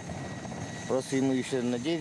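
Steady background noise of a helicopter running, with a man's voice speaking quietly from about a second in.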